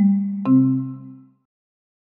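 The end of a short musical logo jingle of struck, rising notes: one last note, then a final chord about half a second in that rings and fades out within a second.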